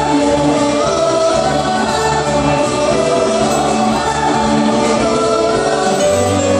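A group of singers on microphones singing a worship song together in parts, with long held notes, over amplified accompaniment with a steady bass line.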